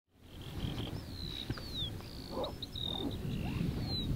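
Small birds singing in the background: a series of short, high whistles, several sliding down in pitch, over a steady low rumble.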